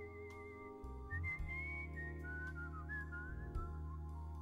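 A person whistling a wavering lead melody into a microphone, high at first and then stepping lower, over held organ chords and a steady low bass note, in a live rock band performance.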